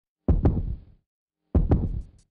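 Intro sound effect of two heartbeat-like double thumps, each a quick lub-dub pair, about a second and a quarter apart.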